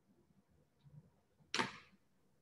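Near-silent pause on a video call, then about one and a half seconds in a short, sharp breath into a microphone that fades out quickly, just before the next speaker starts.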